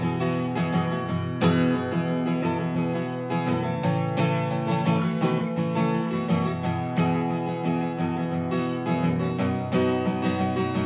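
Acoustic guitar strumming chords in a steady rhythm, with no singing: an instrumental passage between verses of the song.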